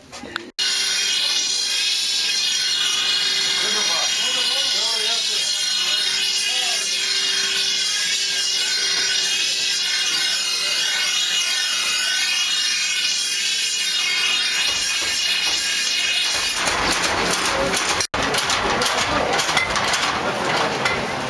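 Metal being ground on a powered grinding wheel: a steady, high, ringing whine with a lower hum beneath it. Near the end it turns to a rougher, hissing rasp.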